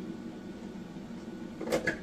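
A steady low hum from a running kitchen appliance, with a brief sharp clatter near the end.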